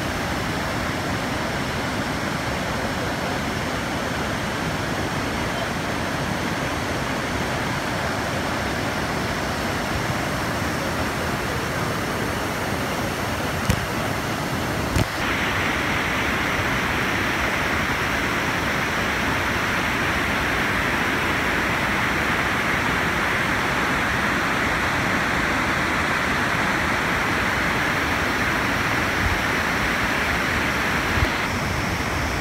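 Waterfall cascades in flood, muddy water pouring over rock ledges and churning in the pool below, a steady rush of falling water. About halfway through there is a short knock, after which the rush turns brighter and slightly louder.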